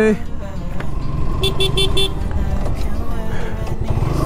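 Motorcycle engine running at low road speed, with a horn beeping four quick times about a second and a half in.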